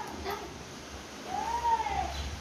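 A single high call from a pet, rising then falling in pitch, about a second and a half in.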